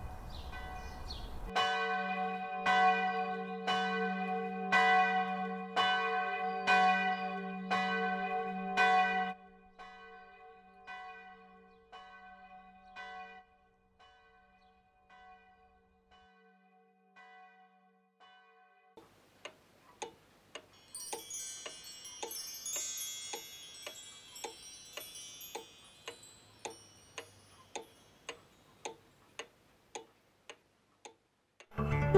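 Church bell ringing in quick, even strokes with a humming tone under them, then cutting down after about nine seconds to fainter, fading strokes. From about two-thirds of the way in, a steady ticking takes over, with a faint high jingling for a few seconds.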